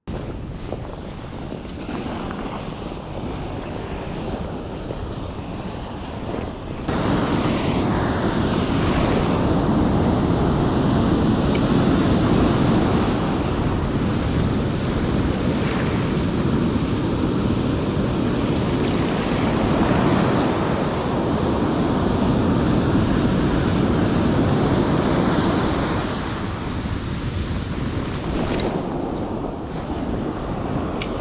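Ocean surf breaking and washing up the beach, with wind on the microphone. It steps louder about seven seconds in and eases a few seconds before the end.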